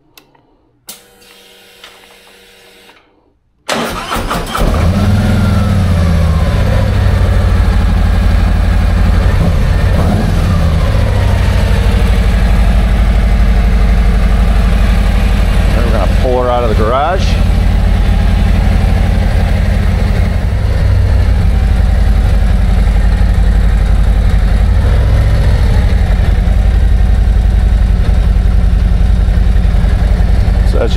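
Harley-Davidson Road Glide's V-twin engine being started: after a faint hum with the ignition on, the starter cranks about three and a half seconds in, the engine catches, and it settles into a steady, loud idle.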